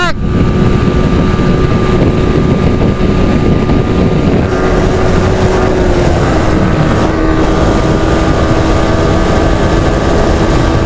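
Yamaha R15 V3's single-cylinder engine droning steadily at speed, its pitch easing down slightly about six seconds in, under heavy wind noise on the microphone.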